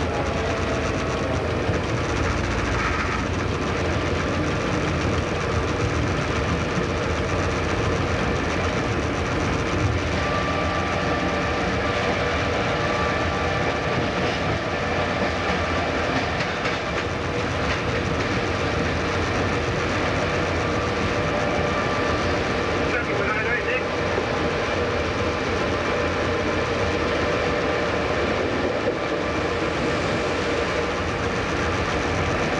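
X class diesel-electric locomotive's engine running steadily, heard from inside its cab, with a few steady tones held over the noise as the locomotive rolls slowly along the track.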